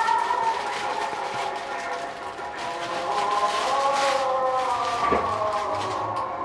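Background music carried by a sustained, slowly gliding melody, with a few brief rustles.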